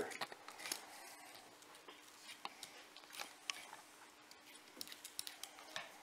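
Faint, scattered small ticks and snips of a utility-knife blade cutting through a deer's lip skin close in along the gums.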